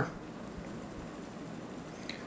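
Quiet room tone: a faint steady hiss with no distinct sounds.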